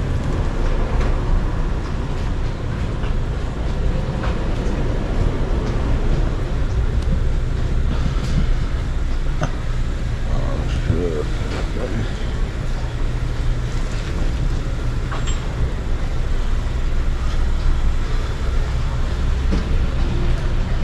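Outdoor street ambience: a steady low rumble of road traffic and vehicles, with people talking in the background and scattered light clicks.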